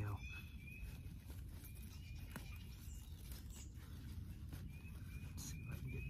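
Hands digging and scraping in forest soil and dry leaf litter to unearth a wild leek bulb, making faint rustles and crackles. A bird calls over it in short chirps repeated several times a second, above a low rumble.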